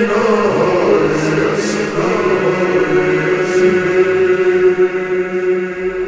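Slowed-down, reverb-heavy noha (Shia lament): male voices chanting in long held notes over a steady sustained tone.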